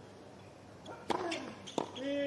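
Tennis rackets hitting the ball in a doubles rally: a sharp pop about a second in, then another near the end.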